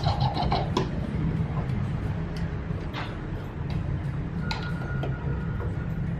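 Waterpulse V660 countertop water flosser's pump running with a fast, even pulsing, then switched off with a click under a second in. A couple of knocks follow as the handle is set back on the unit, over a steady low hum.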